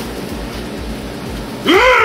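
A low steady hiss, then near the end a man suddenly lets out a loud, drawn-out yell whose pitch wavers up and down.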